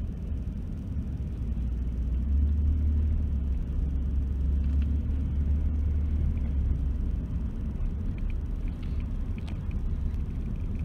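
Low, steady rumble of a car driving, heard from inside the cabin: engine and road noise, swelling a little for a few seconds in the middle.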